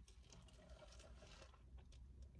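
Near silence with faint, soft chewing sounds from a mouthful of cream-filled donut.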